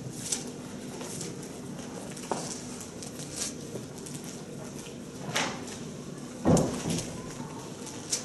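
Pages of a handheld Bible being leafed through: soft rustles and flicks of paper over a quiet room, with one brief louder thump about six and a half seconds in.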